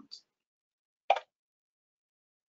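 A single short, sharp pop about a second in, with silence around it.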